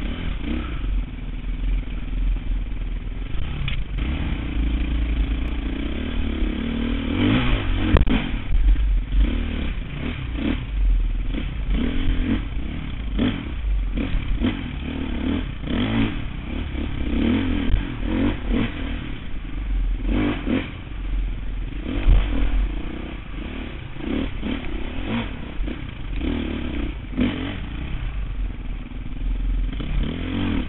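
Dirt bike engine revving up and down as it is ridden over rocky single track. Short clattering knocks from the bike striking rocks come in among the engine sound.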